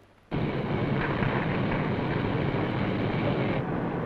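Steady roar of a shipyard furnace heating steel frame ribs red hot. It starts abruptly a moment in.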